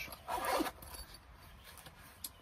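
Zipper of a Bestech soft knife pouch being pulled open in one short rasp about half a second long, near the start.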